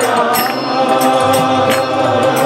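Devotional chanting: voices with a harmonium, and a few sharp strikes from the drum.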